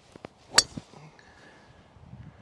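Golf driver striking a ball off the tee: one sharp crack of a Wilson Staff DynaPower Carbon driver at impact, about half a second in, after two faint clicks. The ball was struck a little low on the club face.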